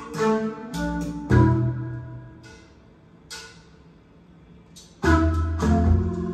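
Music from a vinyl record played through floor-standing loudspeakers: an instrumental passage that thins out to a quiet, sparse stretch in the middle, then comes back in loudly with full bass about five seconds in.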